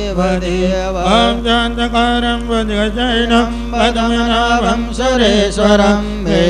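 Devotional Sanskrit verses chanted by one voice in a slow, gliding melody over a steady held drone, with a constant low hum underneath.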